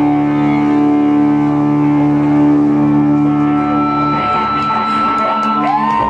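Electric guitars through amplifiers holding a droning, sustained chord. A steady high feedback tone enters about four seconds in, and a note slides upward just before the end.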